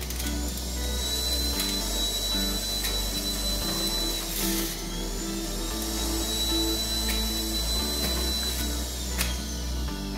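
Electric centrifugal juicer motor running with a steady high whine as carrots are pushed down its feed chute; the whine dips in pitch briefly about four and a half seconds in and recovers. Background music plays throughout.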